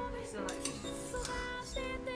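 A metal ladle clinking a few times against a metal hot pot as broth is scooped out, over background music.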